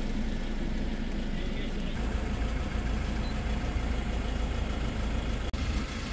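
Toyota Fortuner's engine idling, heard from inside the cabin as a steady low rumble that grows a little stronger about two seconds in.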